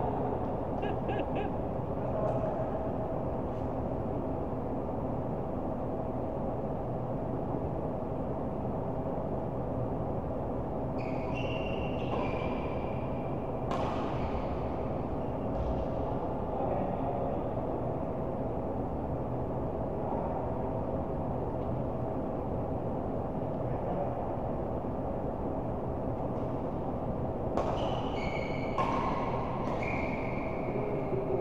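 Badminton rally on an indoor court. Shoes give short high squeaks on the court mat, in clusters about eleven seconds in and again near the end, and there is a sharp racket-on-shuttlecock hit, all over a steady hum of the hall.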